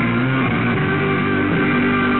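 Rock music with guitar and bass guitar, playing steadily.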